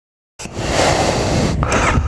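Dead silence that cuts abruptly, about half a second in, to a Yamaha FJR motorcycle's engine rumbling steadily under loud wind noise on the bike-mounted microphone as it rides off.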